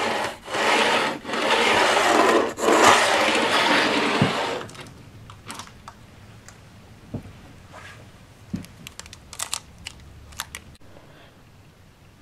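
Pencil scratching along the baseboard in long strokes as it is drawn beside a model wagon pushed along the track, marking a line, for about four and a half seconds. After that it is much quieter, with a few small clicks and taps.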